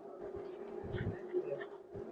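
A steady buzzing hum held at one pitch, with a few faint low thumps around the middle.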